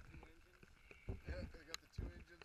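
Indistinct talking between people, with low rumbling thumps underneath.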